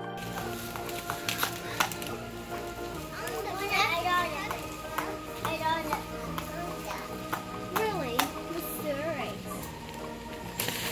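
Background music over a series of sharp hammer taps on plastic garden edging stakes, with a young child's voice calling out a few times in between.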